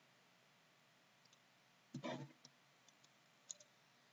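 Near silence with a few faint, scattered clicks and one brief soft sound about two seconds in.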